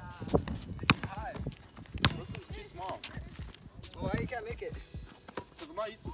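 Basketball bouncing on a concrete court: three sharp smacks in roughly the first two seconds.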